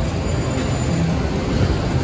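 Steady din of a casino slot floor: a low rumble of room noise with faint electronic tones from the slot machines over it.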